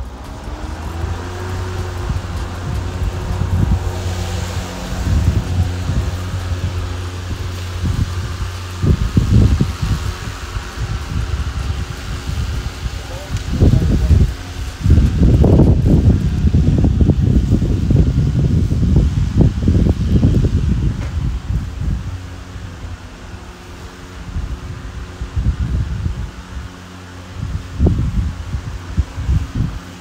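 Ryobi 2x18V ONE+ HP brushless self-propelled lawn mower running while cutting grass: a steady electric whirring hum, its pitch climbing slightly in the first couple of seconds. Louder low rumbling bursts come and go through the middle of the stretch.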